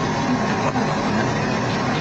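Loud, steady rumbling noise on police body-camera audio, with no clear speech.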